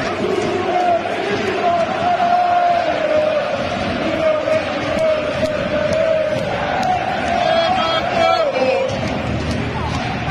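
A football supporters' end chanting together, thousands of voices holding one long sung line that wavers slightly in pitch.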